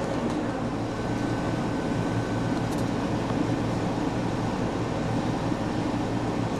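Steady indoor background hum, even in level, with a faint thin high whine over the first two or three seconds.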